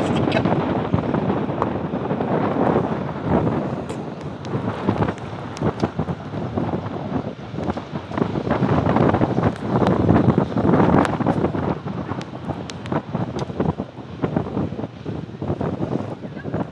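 Wind buffeting the microphone, rising and falling in gusts, with a louder gust about ten seconds in, as the motorboat rides on a trailer towed behind a car. Scattered small clicks run through it.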